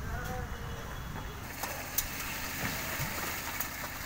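A steady low rumble of a running engine or machine, with a few faint clicks and knocks over it.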